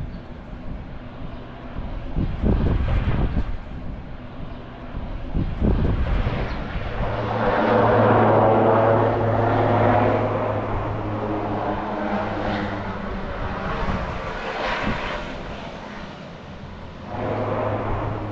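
Propeller aircraft engines droning. The sound grows to its loudest around the middle, fades away, then swells again near the end.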